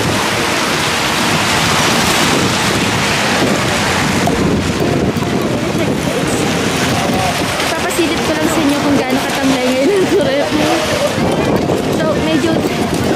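Wind blowing on the microphone, a loud, steady rushing noise throughout, with people's voices talking in the second half.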